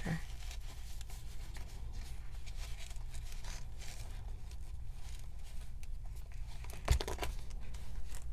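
Paper craft pieces rustling and crinkling as they are handled and pushed into a wallet pocket, with one sharper knock about seven seconds in.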